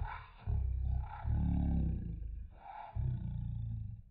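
Briidea power return alarm sounding its siren, signalling that mains power is present, in long pulses with short breaks between them.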